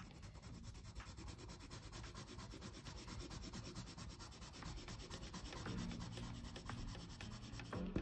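Mahogany coloured pencil shading on drawing paper: a faint, steady scratching of quick, even back-and-forth strokes.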